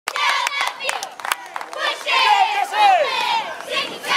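A high-school cheerleading squad clapping a steady beat of sharp claps, then shouting a cheer in high voices from about two seconds in.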